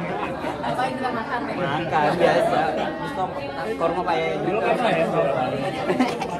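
Several people talking at once in a large room: indistinct, overlapping chatter.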